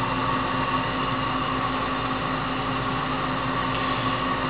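Steady machine hum over an even whooshing noise, with no change in level, like a motor or fan running continuously.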